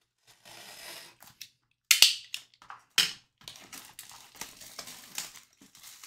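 Plastic shrink wrap being slit and torn off a sealed trading-card box: a soft hiss near the start, two loud crackling rips about two and three seconds in, then lighter crinkling as the wrap is peeled away.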